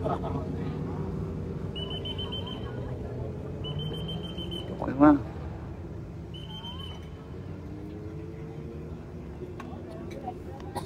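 Three high, steady whistle blasts, each about a second long or less, over a steady murmur of roadside crowd and traffic; a brief shout about halfway through.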